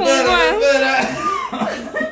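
Excited, high-pitched voices shouting and laughing, dying down near the end.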